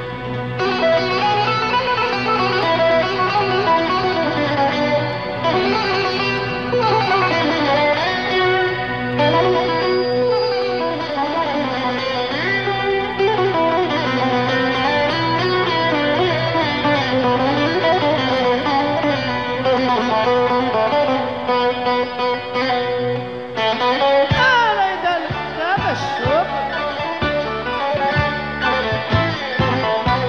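Bouzouki playing an instrumental introduction, running melodic lines that rise and fall over a band accompaniment with a steady bass. Near the end the backing changes to sharper, separated rhythmic strokes.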